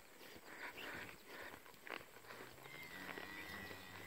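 A faint, low cow moo starting about two seconds in and lasting over a second, over the quiet of an open pasture.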